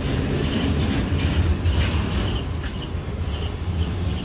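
Steady low rumble of a running vehicle, with a few clicks and short high chirps repeating above it.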